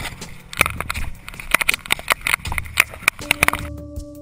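Avalanche shovel digging into snow: a rapid, irregular run of chops and scrapes as the blade is driven in and snow is thrown. Music with steady held notes comes in near the end.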